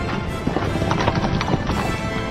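A horse galloping, its hoofbeats coming as a quick, uneven run of hits over music.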